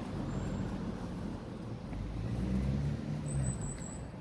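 A motor vehicle passing on the road, its engine rumble growing louder to a peak a little past halfway and then fading.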